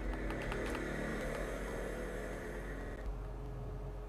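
A steady mechanical whir made of several even tones, with a few light clicks in the first second; its higher part stops abruptly about three seconds in, leaving a lower hum.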